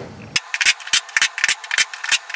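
Cordless drill driving the bolts of a UTV wheel's beadlock ring: a rapid run of short, sharp, thin-sounding bursts, starting about a third of a second in.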